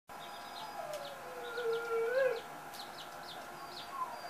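Small birds chirping in short, high notes over and over. About a second in there is one long drawn-out call, the loudest sound, which falls in pitch, holds, then lifts just before it stops.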